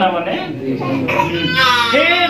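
Speech: a man preaching in Odia, his voice climbing high in pitch near the end, with soft guitar music underneath.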